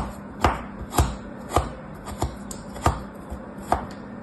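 Plastic toy knife chopping through a molded block of kinetic sand, crisp cutting strokes about every half second, some eight in all.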